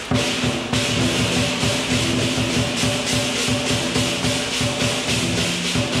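Lion dance percussion: a Chinese drum beaten in a fast, steady rhythm of about four strokes a second, with clashing cymbals and a ringing gong.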